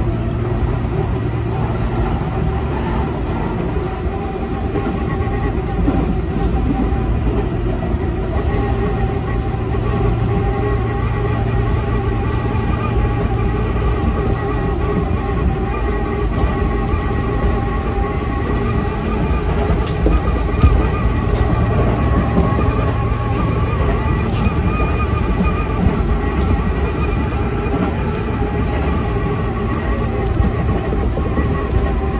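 Tobu 10000-series electric train running at speed, heard from the driver's cab: a steady motor whine over the rumble of wheels on the rails, with a few light clicks about two-thirds of the way through.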